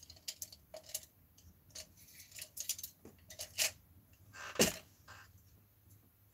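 Paintbrushes rattling and clicking against each other and a small cup as they are sorted by hand: a string of light clicks, with one louder knock a little past halfway.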